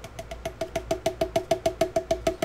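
Milk paint glugging out of an upturned plastic bottle into a cup: a quick, even run of about seven glugs a second, each with the same hollow ring, as air bubbles back up into the bottle.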